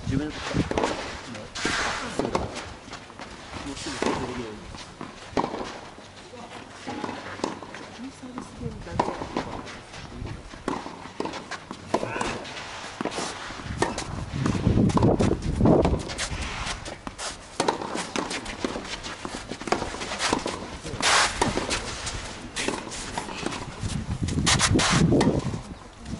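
Tennis ball struck with rackets and bouncing: a serve about halfway through, then a rally of sharp, irregular pops.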